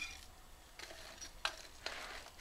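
Faint clicks of metal kitchen tongs against a metal baking pan as breaded chicken breasts are placed in it, two short clicks in the second half.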